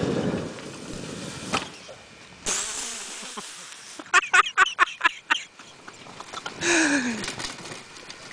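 Quad (ATV) engine running under load at the start, dying away within about a second as the quad runs into a tree. About four seconds in comes a run of loud, sharp vocal bursts, and near the end a falling vocal cry.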